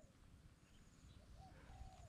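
Near silence: quiet outdoor ambience, with a faint short bird call about one and a half seconds in.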